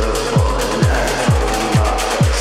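Dark electronic dance track with a driving kick drum, about two beats a second, each kick dropping sharply in pitch, under a dense, gritty synth layer.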